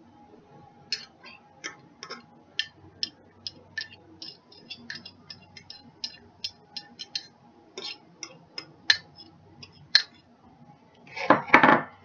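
A utensil clicking against a dish over and over, about three light taps a second, as sour cream is scooped onto a baked potato, then a louder clatter and scrape of utensil on dish near the end.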